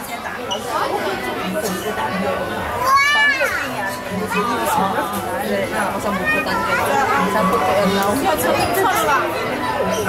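Visitors chattering in a large aquarium hall, children's voices among them. A high-pitched child's call about three seconds in is the loudest moment.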